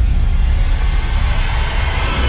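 A loud, steady rumbling roar with a deep low end, a cinematic sound effect that cuts in suddenly just before and holds on without a break.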